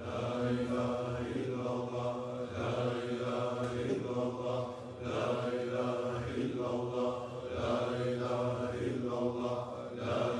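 Dervishes chanting a Sufi zikr together, voices holding a steady pitch and repeating the same phrase over and over in a regular cycle.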